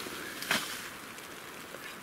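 Nylon stuff sacks and gear rustling as they are handled, with one sharp click about half a second in.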